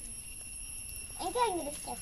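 A child's voice making one short sound about a second and a half in, rising then falling in pitch, over a faint steady high-pitched tone.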